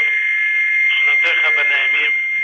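A steady high-pitched whistle with hiss on a narrow, telephone-quality audio line. A man's voice comes in on the same line about a second in.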